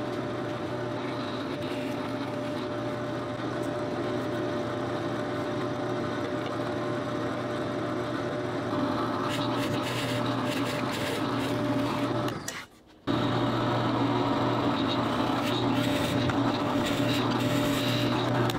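Benchtop drill press motor running with a steady hum while a bit bores 5/8-inch holes into plywood. The sound drops out for about half a second roughly two-thirds of the way through, then carries on as before.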